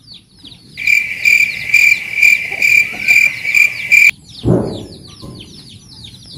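A loud, high insect chirping, pulsing about two to three times a second for roughly three seconds and then cutting off suddenly, over a steady run of small, quick chirps. A short low sweeping sound follows near the end.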